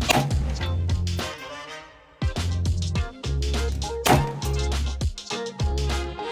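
Upbeat background music with a steady bass beat. Two sharp bangs stand out above it, one at the very start and one about four seconds in.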